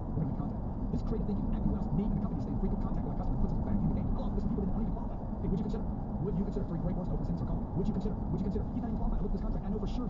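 Steady road and tyre noise of a car driving, heard inside the cabin, with faint ticks and rattles over the low rumble.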